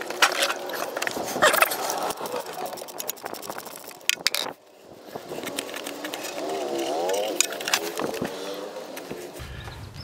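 Ratchet wrench clicking and knocking against metal as the cartridge oil filter housing cap of a 2014 Chevy Sonic is loosened and unscrewed, with irregular clicks over the first few seconds.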